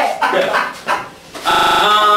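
Voices talking over each other, then a loud, drawn-out laugh about a second and a half in.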